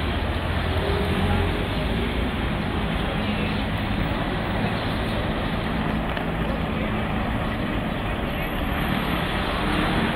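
A steady engine running, with a low hum under it and voices in the background.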